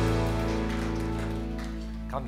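Live worship band's final chord held and slowly dying away, leaving a soft steady keyboard pad.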